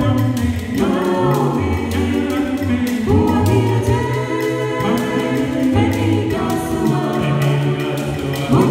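A small mixed a cappella group of men and women singing in harmony, with a low bass line under the upper voices. A beaded gourd shaker keeps a steady rhythm.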